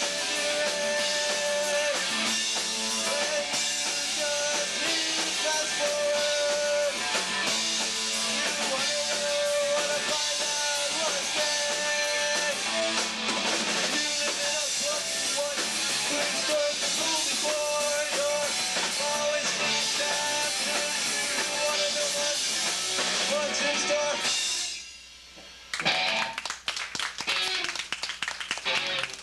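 Live punk rock band playing loud distorted electric guitars, bass and drum kit, with a singer. The song stops short near the end, and after a second's lull scattered clapping starts.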